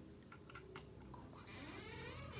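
Near silence, with a few faint clicks of small plastic Lego pieces being handled and placed. A faint pitched sound rises and falls near the end.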